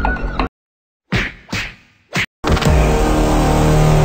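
Edited film soundtrack: the music breaks off into dead silence, then two sharp whooshing hits and a short third hit, followed about halfway through by a loud, steady droning sound effect.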